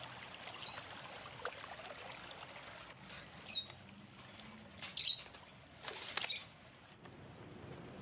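Water spraying and pattering onto garden soil and plants with a steady hiss. Caged small parrots give a few short chirps about three and a half, five and six seconds in.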